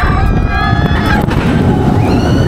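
Riders screaming as the dive coaster's train drops straight down the vertical first drop, over a steady rush of wind on the microphone.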